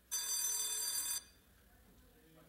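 A single electronic bell-like signal tone, loud and ringing, lasts about a second and stops abruptly.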